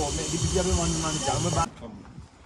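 People talking over a steady high hiss. Both cut off abruptly near the end, leaving a much quieter background.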